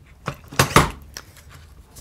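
Metal clicks and a clunk from a Bosch router motor being fitted into its plunge base: a light click, a louder clunk just before the middle, then a faint click.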